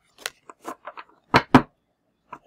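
Stiff new oracle cards being shuffled by hand: a string of short snaps and taps, the loudest two close together about a second and a half in.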